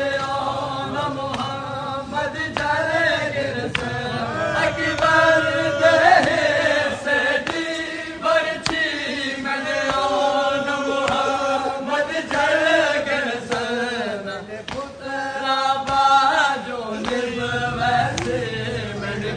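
A group of men chanting a noha, a Shia mourning lament, in unison as they walk, with the sharp strokes of hands beating on chests (matam) keeping time.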